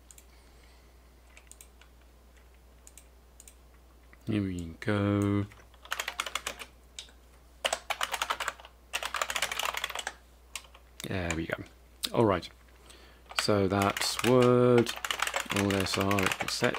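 Computer keyboard typing: a few faint, scattered keystrokes at first, then fast bursts of typing from about six seconds in. Several short stretches of a man's voice come between the bursts, with no clear words.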